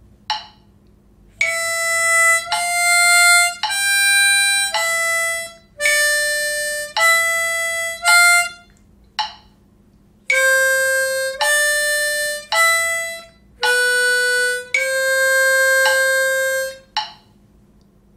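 Diatonic harmonica in C playing a slow single-note exercise in time with a metronome at 54 beats per minute. It plays seven notes in a row, rests for a beat, plays four more notes and ends on one longer held note. Short metronome beeps are heard in the gaps.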